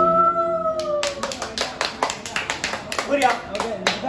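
One long held vocal note, sliding up at the onset and easing slightly downward before it fades just over a second in, gives way to a small group clapping unevenly, with voices mixed in.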